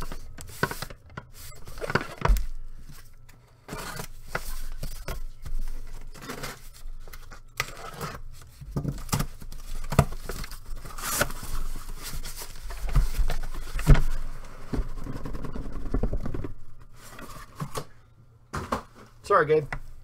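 A sealed cardboard case being opened by hand: tape and cardboard tearing and scraping, flaps rustling, and irregular knocks as the case is handled.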